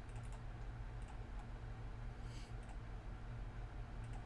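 A few faint, scattered clicks of a computer keyboard and mouse, the brightest about two and a half seconds in, over a steady low hum.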